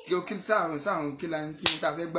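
A man speaking steadily, with one sharp snap about one and a half seconds in that is louder than his voice.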